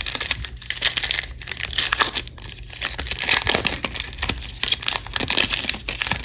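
Foil trading-card pack wrapper crinkling as it is handled and torn open, in a run of small crackles, quieter for a moment around the middle.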